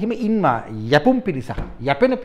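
A man speaking in an animated, emphatic voice, his pitch rising and falling sharply.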